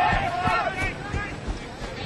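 Sideline spectators shouting at a rugby match: loud, high-pitched yelling through the first part, easing to scattered quieter shouts under a general crowd murmur.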